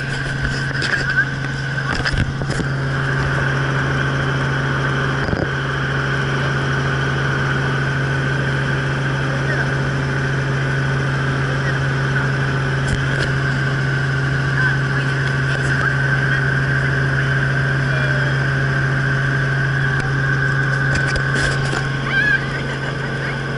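Robinson R44 helicopter heard from inside the cabin in flight: the steady drone of its Lycoming six-cylinder piston engine and rotors, a strong low hum with a higher whine above it, both held constant.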